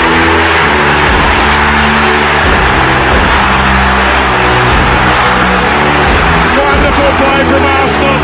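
Stadium crowd cheering a goal, a loud, steady roar, over electronic music with held bass notes that shift every half second or so. A commentator's voice comes up near the end.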